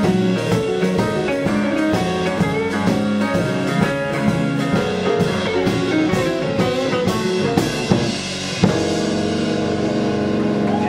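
Live blues band playing: electric guitar, electric bass, keyboard and drum kit, with steady drum hits driving the beat. Near the end the beat stops on one last hit and the band holds a ringing chord.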